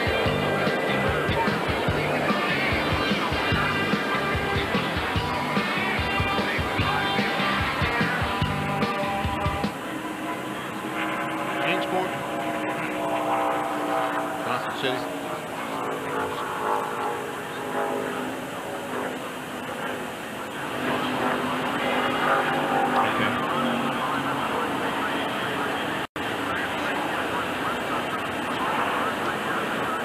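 Music with a steady beat for about the first ten seconds, then NASCAR Winston Cup stock cars' V8 engines racing around the oval, their pitch sliding up and down as the pack goes by. The sound cuts out for an instant near the end.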